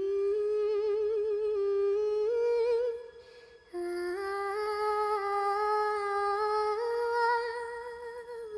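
Sped-up, pitched-up (nightcore) female vocalising: a wordless hummed melody sung with vibrato, in two long held phrases with a short break about three seconds in.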